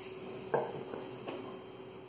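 Two light knocks of plastic kitchen containers being handled, the first about half a second in and a fainter one a little later.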